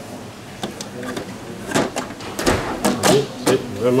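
Plastic cover flaps of a Juwel Vision 180 aquarium lid being set down and clicked into place: a run of sharp plastic clicks and knocks, most of them in the second half.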